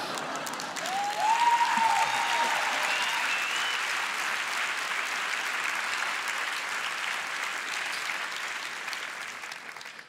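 Large theatre audience applauding, swelling about a second in and dying away near the end.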